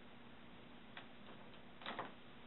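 Quiet room tone with a steady low hum, broken by a few faint, sharp clicks at uneven intervals: one about a second in and a louder one near the end.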